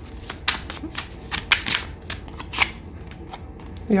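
Tarot cards being shuffled by hand: a quick, irregular run of card snaps and flicks that thins out after about two and a half seconds.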